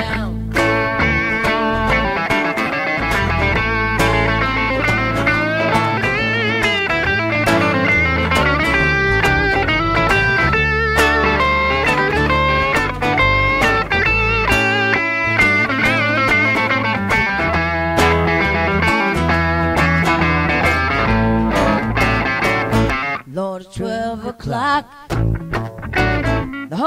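Instrumental break in a blues rock-and-roll cover: a handcrafted solid-body electric lead guitar plays bending riffs over acoustic rhythm guitar and bass. Near the end the full sound drops back to sparser, quieter guitar playing.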